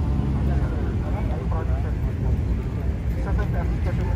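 Steady low rumble of outdoor background noise, with faint voices of a group talking over it.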